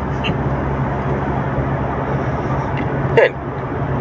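Steady noise inside a car cabin: a low, even hum under a constant rush, with the engine running.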